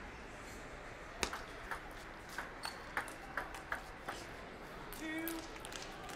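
Table tennis rally: the ball clicking sharply off the paddles and the table about ten times, roughly three a second, starting about a second in and stopping after about three seconds.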